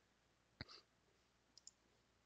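Near silence broken by a short, sharp click about half a second in and two faint ticks near the end, computer mouse clicks.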